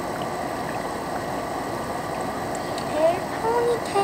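Room air conditioner running, a steady even rushing noise.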